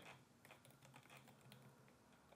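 Faint typing on a computer keyboard: a handful of soft, scattered key clicks.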